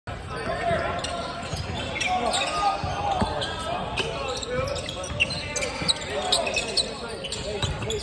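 Indistinct voices of players talking across a large gym, with a basketball bouncing on the hardwood court a few times and short high sneaker squeaks, all with hall echo.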